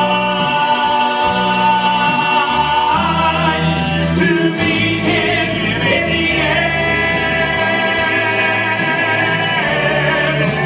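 Southern gospel male vocal trio singing in harmony, holding long notes, over accompaniment music with a bass line and a regular beat.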